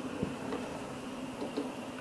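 Quiet room tone with a faint steady hum, broken by a few faint light clicks from the ASUS XG32VQ monitor's rear OSD joystick being pressed, about a quarter second in and again around a second and a half.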